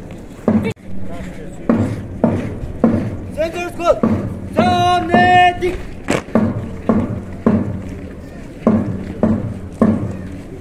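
A drum beats steady marching time, a little under two strokes a second, for a marching contingent. About three and a half seconds in, a loud, drawn-out shouted drill command rings out over the beat.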